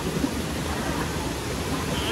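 Steady rush of white water cascading over boulders below a waterfall.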